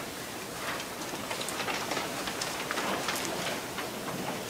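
Faint room noise: a steady hiss with scattered small clicks and rustles.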